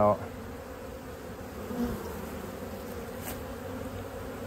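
Steady buzzing hum of a honeybee colony in an opened hive box, with thousands of bees crowding the frames.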